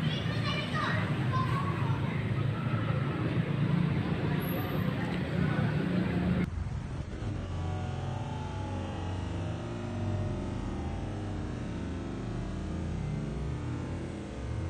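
Indistinct voices over steady low rumbling noise; about six and a half seconds in, the sound cuts off abruptly and gives way to a duller, lower rumble.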